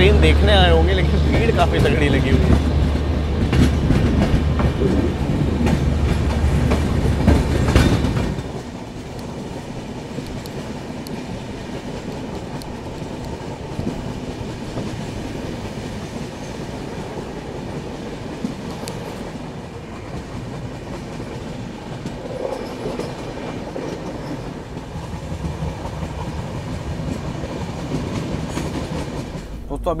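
Passenger train running, the steady rumble of the coaches on the track heard from beside the coach. For the first eight seconds a louder low hum and some voices sit over it, cutting off abruptly; after that the running noise carries on more quietly and evenly.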